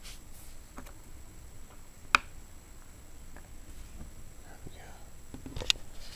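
Handling noise from a small clear plastic shipping vial: two sharp clicks, one about two seconds in and a louder one near the end, over faint rustling.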